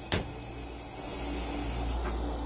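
A long draw on a Smok S-Priv vape with a Baby Beast glow tank: a steady airflow hiss as air is pulled through the tank, after a single short click just after the start.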